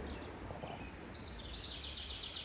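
Quiet outdoor background with a low steady rumble; about halfway through, a small bird starts a rapid, high-pitched trill of evenly repeated notes.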